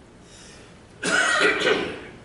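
A man coughing into his hand: one loud cough burst about a second in, lasting just under a second.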